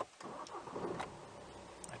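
A BMW 320d's four-cylinder diesel engine being started, heard from inside the cabin: a click, then the starter turns the engine over and it catches and settles into a steady idle.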